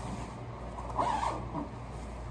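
A fabric backpack's zipper being pulled, loudest in a short rasp about a second in, amid the rustle of the bag being handled as a binder is slid into its pocket.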